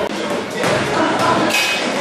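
Busy free-weights gym background: people talking, with a thud of weights hitting the floor.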